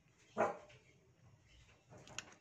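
A single short dog bark about half a second in.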